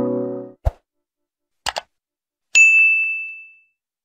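Sound effects from an animated subscribe-button outro: the last music chord fades out, a soft thump follows, then a quick double click, and a bright notification-style ding that rings for about a second.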